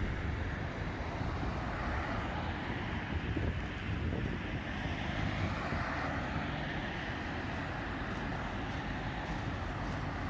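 Steady outdoor urban background noise: an even hum of distant traffic, with no single event standing out.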